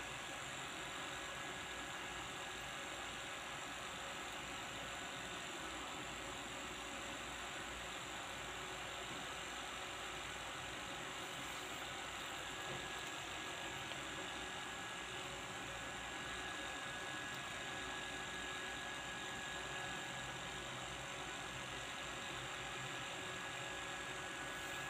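Steady background hum and hiss that holds at an even level with no distinct events, under a faint, thin, high steady tone.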